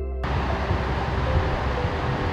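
Background music ends a moment in, giving way to a steady outdoor rushing noise with a low rumble.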